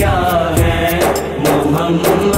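Devotional naat music: a wordless chanted vocal melody, held and wavering, over a steady rhythmic beat.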